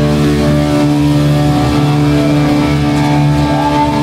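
Distorted electric guitars and bass holding a loud, steady droning chord through an amplifier, without drums. Near the end a guitar note bends up and back down.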